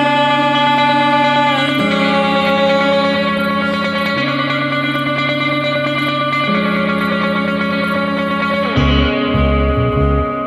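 Instrumental passage of a band playing live: guitar holding chords that change about every two seconds, with no vocals. About nine seconds in, a low pulsing rhythmic part comes in underneath.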